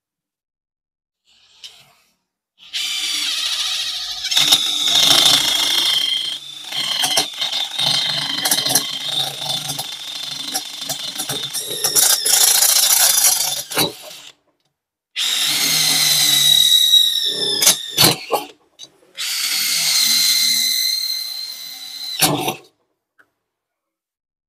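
DeWalt DCF850 cordless brushless impact driver driving a twist drill bit into a metal bar in three runs: one long run of about ten seconds, then two short ones. The bit cutting the metal gives a steady high whine, and there are a few sharp clicks as runs end.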